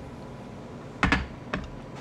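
Objects handled on a table: a sharp clatter about a second in, then a smaller click about half a second later, over low room noise.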